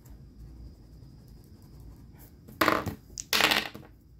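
Two six-sided dice tossed onto a hard tabletop, clattering in two short bursts near the end.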